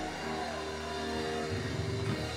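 Organ holding sustained chords under the sermon, with the low notes changing about one and a half seconds in.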